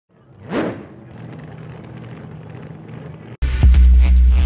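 Intro music sting: a whoosh about half a second in, a low steady drone, then, after a brief cut at about three and a half seconds, a loud deep bass hit that carries on.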